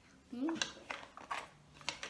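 Wooden serving spoon knocking against a pan and a plastic bowl while gumbo is ladled out: about four short, sharp clicks spread over two seconds, after a brief "mmh".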